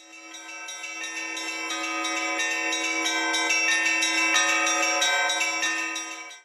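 Church bells ringing: many bells struck in quick, irregular succession over a steady low hum. The ringing fades in over the first second and fades out near the end.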